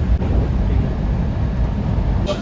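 Steady low rumble of a Rajdhani Express train running, heard from inside the passenger coach.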